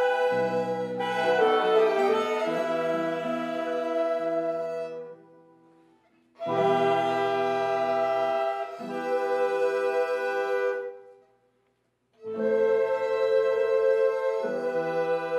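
Ensemble of violins, saxophones, keyboards and other instruments playing held chords. The phrases die away twice, about five seconds in and near eleven seconds, each followed by a moment of silence before the next chord comes in.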